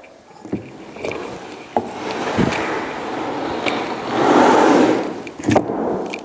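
A wooden sloped hitting platform being dragged and turned on artificial turf: a scraping rumble that builds and is loudest about four to five seconds in, with several knocks along the way.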